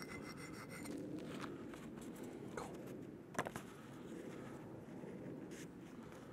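Faint rubbing and rustling of a cloth wiping sharpening oil off a garden knife blade, with a light knock about three and a half seconds in.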